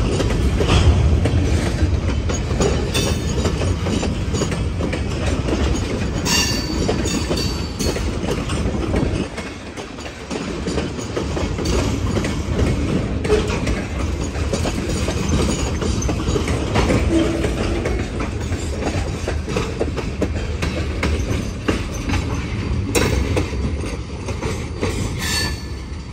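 Loaded freight cars (tank cars and covered hoppers) of a Huron and Eastern Railway train rolling past at low speed: a steady rumble with wheels clicking over rail joints, and a short high wheel squeal about six seconds in.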